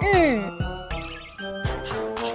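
Cartoon soundtrack: a falling gliding tone in the first half second, then a tinkling magic-sparkle jingle over background music.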